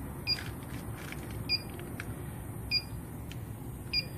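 Electronic combustible-gas leak detector beeping: a short, high two-tone chirp repeating at an even pace about every 1.2 seconds, four times.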